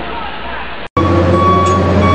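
A rough outdoor recording with a noisy haze, cut off abruptly just under a second in, followed by a steady machine hum with a constant high whine over a low drone, from heavy crane machinery.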